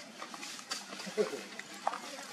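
Long-tailed macaques: a short falling call about a second in, among a few soft clicks.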